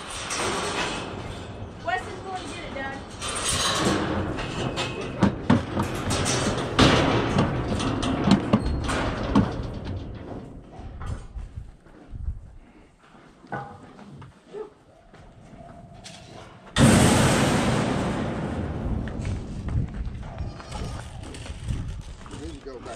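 Thumps and bangs of steel chute panels and gates in a livestock working alley, busiest in the first half. About three-quarters of the way through, a sudden loud rushing noise fades away over a few seconds.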